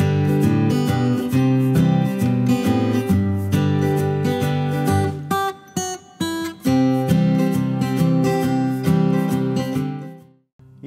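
Intro music of strummed acoustic guitar, with a brief break about five and a half seconds in, dropping away at the end.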